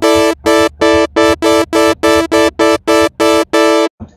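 Thor software synthesizer playing a phase-modulation patch: the same short, bright, buzzy note repeated about three times a second at a steady pitch.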